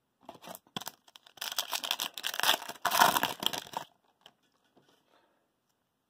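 Foil wrapper of an Upper Deck hockey card pack being torn open and crinkled: a crackling rustle that builds over the first second or so, runs densely for about two seconds, and stops about two thirds of the way through.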